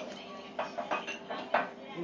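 Tableware clinking and tapping on a bar counter: a quick run of light, sharp clinks through the middle second, a few with a short ring, against low voices.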